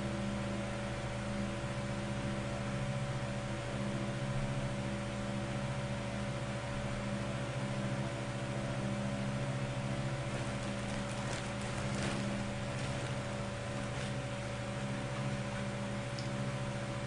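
Steady low electrical or machine hum with several fixed tones over a hiss, with a few faint clicks about ten to fourteen seconds in.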